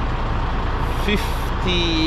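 Steady low rumble of an idling diesel semi-truck engine.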